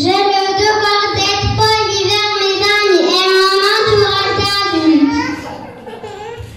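A child's voice singing loudly in long held notes, starting suddenly and ending on a falling note near the end.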